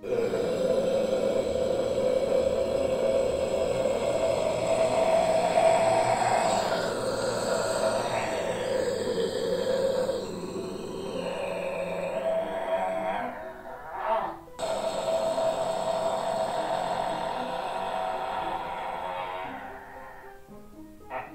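A man's death metal growl, a low guttural vocal held as long as he can: one long growl of about thirteen seconds, a quick breath, then a second growl of about five seconds. The growls are practice for holding a growl longer.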